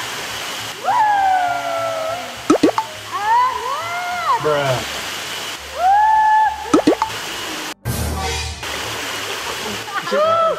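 Three long, high-pitched squeals, each sliding and held for about a second, with a few short clicks between them. A sudden cut near the end, followed by a brief rush of water noise.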